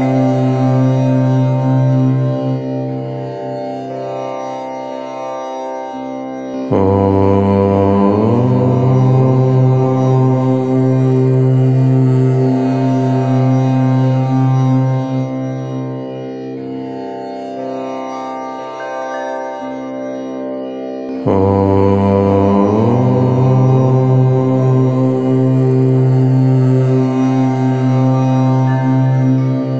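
Low-pitched "Om" chanting: long, drawn-out Om syllables, each starting abruptly, held for many seconds and slowly fading before the next begins. New chants start about a quarter of the way in and again about three quarters of the way in.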